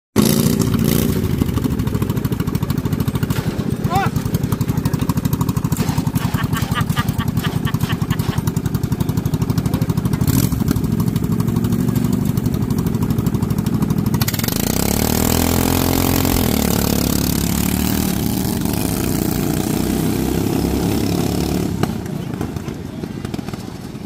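Riding lawn mower engine running at the start line with a rapid, even firing beat, then revving up about 14 seconds in as the mower launches, its pitch rising and then falling. The sound fades near the end as it moves away.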